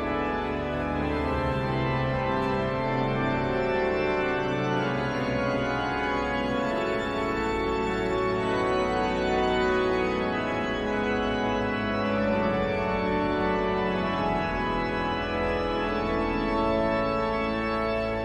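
Pipe organ playing sustained hymn chords on its own, the voices silent between verses.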